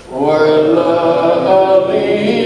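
A man chanting a devotional song in long, held, melodic notes, starting a new phrase just after a brief pause at the start.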